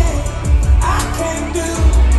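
Live country-pop band playing, with drums, bass and a singer, recorded from the crowd. A short sung phrase rises briefly about a second in.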